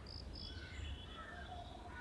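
Faint outdoor ambience with a few brief high-pitched chirps in the first half second and fainter short calls after, over a low steady hum.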